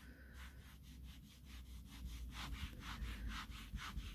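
A hand brushing back and forth over damp velvet pile, a faint rhythmic swish at about four strokes a second that grows a little louder partway through. The pile is being realigned to lift crush and pressure marks.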